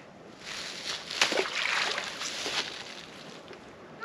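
Splash and water noise as a small largemouth bass is tossed back into the pond, sharpest about a second in, then fading after a couple of seconds.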